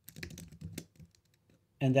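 Typing on a computer keyboard: a quick run of key clicks in the first second, then a pause.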